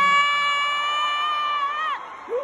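A single high-pitched scream held for about two seconds, rising as it starts and dropping off at the end: an excited cheer at the concert.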